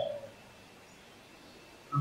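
A short pause in a man's speech: his voice trails off just after the start, then there is only faint, steady room tone before he speaks again at the very end.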